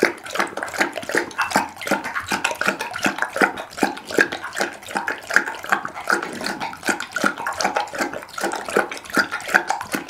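Pit bull lapping liquid from a glass bowl, close-miked: a fast, steady run of wet laps and splashes, several a second, with the tongue clicking against the glass.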